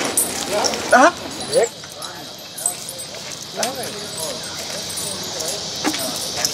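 Indistinct voices in short, broken phrases, with a few sharp clicks and knocks among them and a faint steady high hiss underneath.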